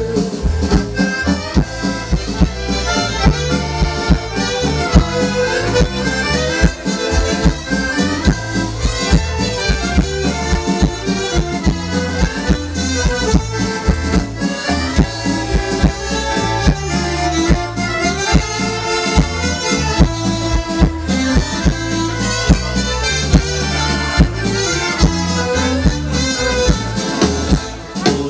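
Live folk band playing an instrumental break in a waltz, led by accordion over a steady bass beat, through a PA system.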